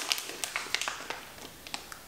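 Crinkling and small clicks of the plastic-and-paper peel pouch of an arterial blood gas kit being handled and opened by hand. The clicks come thickly in the first second, then thin out to a few.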